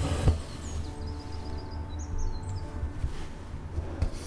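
Embroidery needle and thread pulled through linen fabric, a short rasping draw near the start, over a steady low room hum. Faint high chirping comes in from about a second in.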